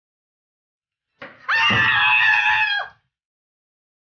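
A woman's single high-pitched scream of pain, about a second and a half long, falling off at the end: she has cut her finger with the kitchen knife.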